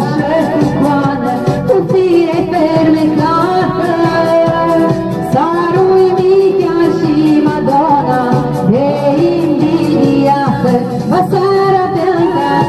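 A song with a singing voice over a steady beat, playing loud and continuous.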